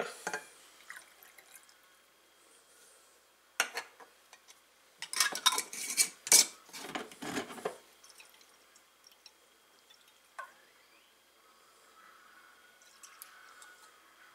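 The last of the water trickles into a glass jar right at the start. A metal screw lid then clinks, and about five seconds in it clatters and scrapes for a couple of seconds as it is screwed onto the glass jar.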